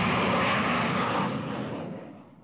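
Jet airliner taking off low overhead: loud, steady jet engine noise that fades away in the second half.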